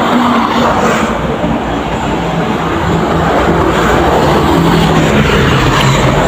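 Steady, loud roadside vehicle noise: traffic passing close by, with a low engine hum running underneath.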